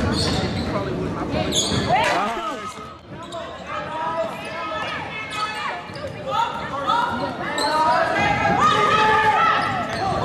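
Basketball game in a large gym: a ball bouncing on the hardwood floor with players and spectators calling out, echoing in the hall.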